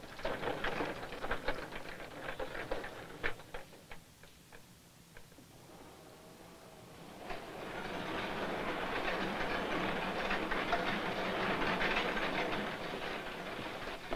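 Sharp metal clanks and knocks in the first few seconds. After a short lull, the steady noise of underground coal-mine machinery running starts about seven seconds in and carries on for about six seconds.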